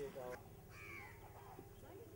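Birds calling. One pitched call falls in pitch just under a second in, with fainter calls after it. A brief spoken word comes at the start.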